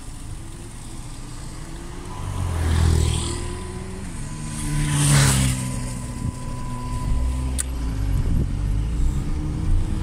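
Road traffic passing close by: two cars swish past, loudest about three and five seconds in, then a low engine rumble from a vehicle nearby.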